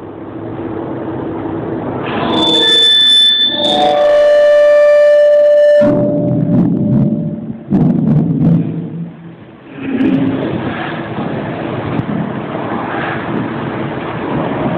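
Intro music: a sustained electronic chord of steady high and mid tones, about two to six seconds in, that cuts off suddenly, followed by rougher, noisier sound.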